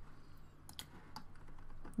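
A few light clicks of a computer keyboard being tapped, over faint room tone.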